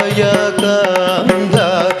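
A male singer performing a Carnatic-style devotional song, holding and gliding between notes, over drum strokes that keep a steady beat.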